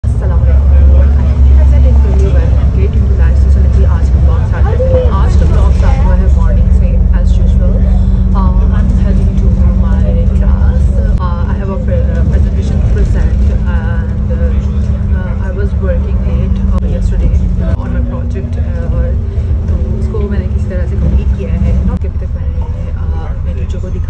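Inside a moving bus: the steady low rumble of the engine and road, with a droning hum that shifts pitch about three-quarters of the way through. A woman talks over it.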